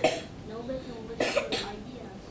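A person coughing: a short cough at the start and another a little over a second in.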